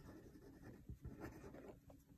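Faint sound of a pen writing a word on paper, in short irregular strokes.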